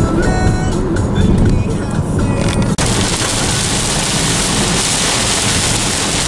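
Music with a melody playing for just under three seconds, then a sudden cut to steady rain falling on a car, heard from inside it.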